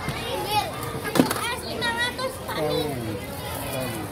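Schoolchildren chattering and calling out in high voices, with a single sharp knock about a second in.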